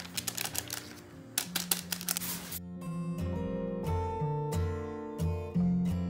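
A paper sachet of baking powder crinkling and rustling as it is emptied over flour, heard as a run of quick crackles and clicks. About two and a half seconds in, background music with a melody of distinct notes takes over.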